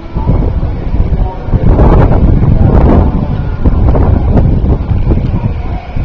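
Wind buffeting the microphone: a loud, uneven low rumble that swells and dips, loudest about two to three seconds in.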